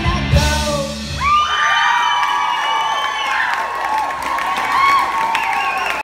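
A live rock band with electric guitars and drums stops playing about a second and a half in, at the end of the song, and the audience cheers and whoops.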